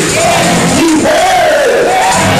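A preacher's loud voice shouted in a sung, chant-like way through the microphone and PA, its pitch held and bending, with music playing behind it.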